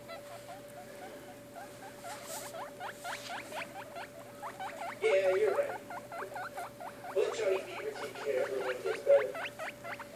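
Baby guinea pigs squeaking: a long run of short, quick rising squeaks, several a second, with louder stretches about halfway through and again near the end.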